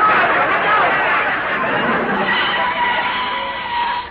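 Studio audience laughing loudly at a slapstick near-crash gag, stopping suddenly near the end.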